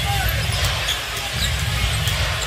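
Arena crowd noise over low, bass-heavy music from the arena sound system, with a basketball being dribbled and a few sneaker squeaks on the court.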